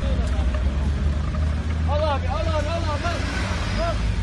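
A steady low engine rumble from emergency vehicles idling, with several people talking over it. One or more voices call out loudly about two seconds in.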